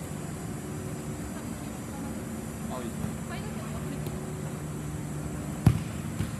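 Steady low hum with faint distant shouts, then a single sharp thud near the end as a futsal ball is kicked.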